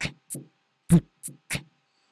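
Beatboxed drum samples played back through Logic's Ultrabeat drum synth: a short groove of mouth-made kick-drum thumps about a second apart, with closed hi-hat ticks and snare hits between them.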